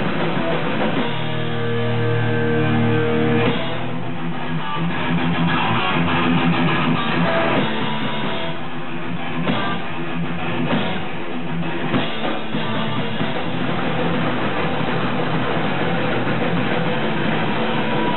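Live metal band playing: distorted electric guitars, bass guitar and a Yamaha drum kit. About a second in, a chord is held for a couple of seconds, then the drums and riffing drive on.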